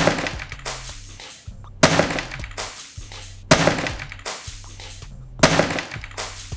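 A LEGO model house dropped onto a table, smashing apart with plastic bricks scattering; the crash is heard four times, about two seconds apart. Background music with a steady low beat runs underneath.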